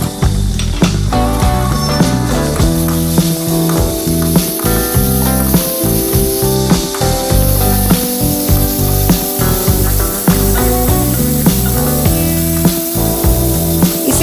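Background music over garlic-ginger paste sizzling in hot oil in a steel kadai, with occasional scrapes and clicks of a metal slotted spoon stirring it.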